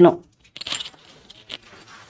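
Cotton saree fabric rustling as it is unfolded and handled, with bangles clinking lightly on the wrists.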